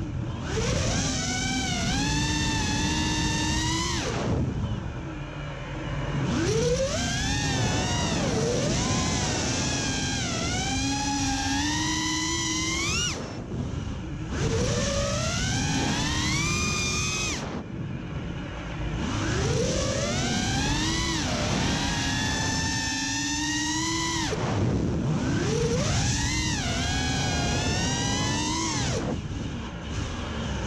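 FPV quadcopter's brushless motors (iFlight Xing 2208 1800kv on a 6S battery) whining, the pitch sweeping up and down again and again as the throttle is punched and eased through acrobatic flying, with several short dips where the throttle is chopped.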